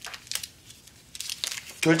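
Soft crinkling of paper handled in the hands, a few short rustles, with a man's voice coming in near the end.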